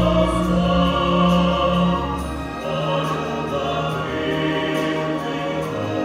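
Live orchestra accompanying singing voices in a slow piece of long held notes, with the bass line moving to a new note about halfway through.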